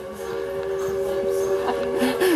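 Steam locomotive chime whistle blowing one long, steady blast of several notes at once, sagging down in pitch as it ends.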